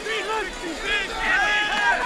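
Several high-pitched voices shouting and calling out from the stadium during a football play, overlapping one another.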